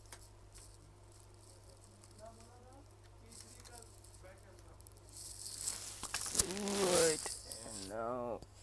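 Gloved hands rustling and scraping as they hold a smartwatch and its charging cradle in place, louder from about five seconds in, over a steady low electrical hum. A man's voice murmurs wordlessly around six to seven seconds.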